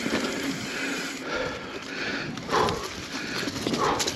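Mountain bike riding over a dirt singletrack trail: tyre noise and the bike rattling over bumps and roots, with a louder knock about two and a half seconds in and another near the end.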